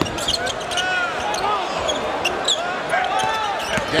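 Live basketball play on a hardwood court: the ball being dribbled and many short sneaker squeaks over the steady noise of an arena crowd.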